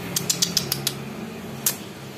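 A quick run of about six sharp clicks in the first second, then one more click a little later, over a steady low hum.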